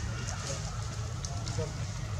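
Faint distant voices over a steady low rumble, with a few light crackles.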